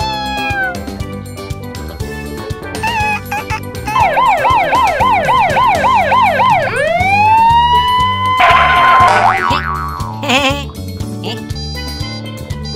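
Fire-engine siren sound effect over background music. It starts about four seconds in as a fast up-and-down yelp, about three cycles a second, then changes to a single rising wail that holds steady for a couple of seconds before stopping.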